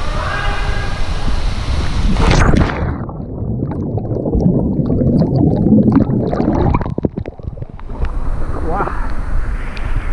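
Water rushing down an enclosed waterslide tube, then a splash about two and a half seconds in as the rider drops into the plunge pool. For about five seconds after that the sound is muffled and bubbling, heard from underwater, until it clears near the end on surfacing.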